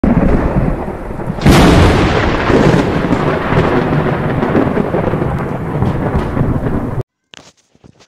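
Logo-intro sound effect: a loud, rumbling noise with a sharp crack about one and a half seconds in, cut off abruptly about seven seconds in, followed by a few faint clicks.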